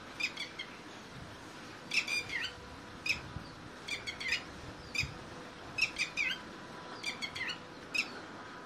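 Red-wattled lapwings calling: sharp, high notes in short runs of two or three, repeating about once a second.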